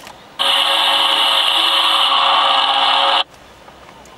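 Loud static hiss from a small portable TV's speaker while its channel scan searches with no programme tuned, lasting about three seconds and cutting in and out abruptly.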